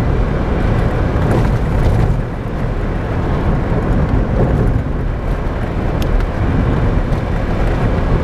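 Steady road and engine noise inside the cabin of a moving Daihatsu Copen Active Top, its 660 cc turbocharged four-cylinder running under way, heaviest in the low rumble. A couple of faint clicks stand out, about two seconds in and again near six seconds.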